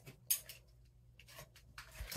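A bare foot tapping a digital bathroom scale on a tile floor to wake it: one short scuff about a third of a second in, then a few faint clicks and taps.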